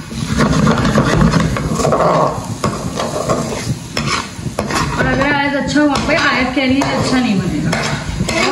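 Slotted metal spatula stirring and scraping sweet corn kernels around a hot pan, with the clicks of the spatula on the metal over the sizzle of the frying corn. About five seconds in, a wavering, voice-like pitched sound joins for a couple of seconds.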